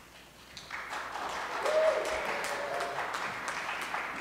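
Audience applauding, starting under a second in and continuing steadily, with one short held note rising above the clapping midway.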